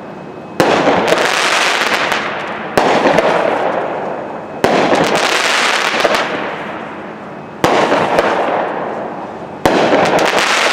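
Dominator Fireworks Exoskeleton, a 12-shot 200-gram cake, firing its shells: five loud bangs about two seconds apart, each followed by crackling that fades away.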